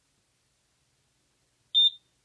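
A fire alarm control panel's piezo sounder gives one short high beep near the end, against near silence.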